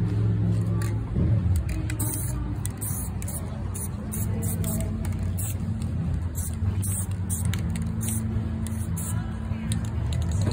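Aerosol spray paint can sprayed onto a canvas in many short hissing bursts, about one or two a second, over a steady low hum.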